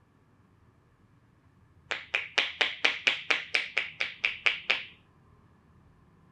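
A masseuse's hands slapping in a quick, even percussion-massage rhythm: about thirteen crisp slaps, roughly four a second, for about three seconds.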